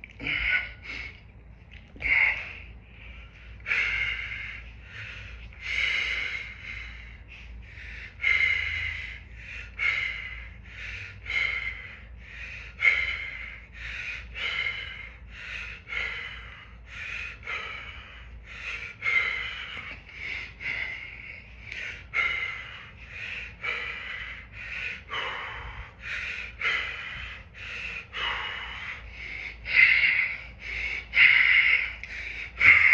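A man breathing hard through a set of dumbbell reps: short, forceful exhales, sometimes snorting through the nose, repeating every second or so.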